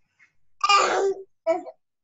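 A person's voice making a brief non-word vocal sound: one drawn-out sound of about half a second, then a shorter one.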